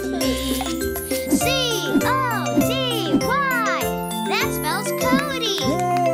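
Cartoon children's song music with tinkling, chime-like jingles. From about a second and a half in, a child's voice makes a string of up-and-down swoops over it.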